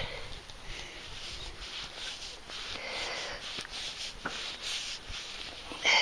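Coin being rubbed on cloth trousers with a gloved hand to wipe the mud off: an irregular, hissy fabric rubbing in uneven strokes, with a few faint ticks. A short breathy sound comes just before the end.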